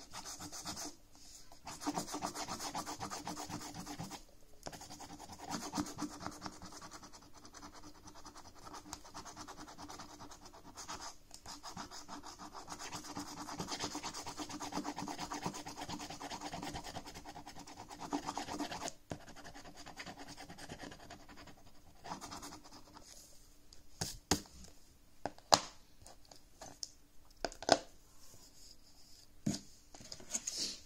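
Scratch-off coating being scraped from a paper lottery scratchcard with a scratcher token, in quick back-and-forth strokes with short pauses, for a little over twenty seconds. Near the end, a few sharp taps.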